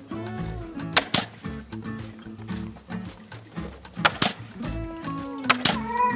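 Pneumatic nail gun firing a few sharp shots, about a second in and again around four seconds in, nailing a deck joist to the ledger, over background music.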